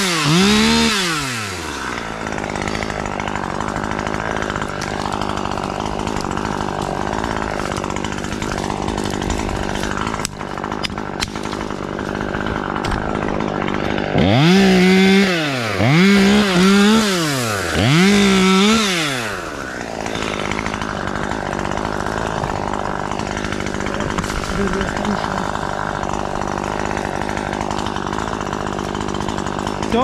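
Husqvarna T540XP Mark III top-handle two-stroke chainsaw idling, blipped to high revs and back at the very start, and again four times in quick succession about halfway through.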